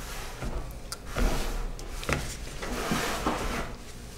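Spatula stirring and scraping thick soap batter around a plastic pitcher, mixing purple colorant into cold process soap, with a couple of short knocks against the pitcher.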